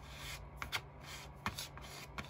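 Edge of a paint-loaded card pressed and dragged across paper, printing stem lines: a few short papery scrapes with light clicks.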